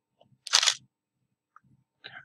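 Nikon D70s digital SLR taking a picture: one short, sharp shutter-and-mirror clack about half a second in.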